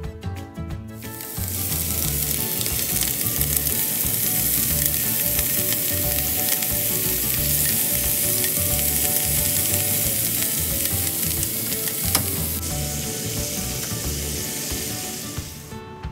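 Bacon-wrapped asparagus rolls sizzling as they fry in a pan. The sizzle starts about a second in and cuts off near the end, over soft background music.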